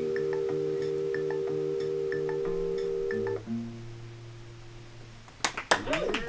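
A live band ends a song on a held final chord with light guitar picking. The chord stops about three seconds in, leaving a low note ringing and fading. Near the end, a short burst of different music with sweeping tones begins.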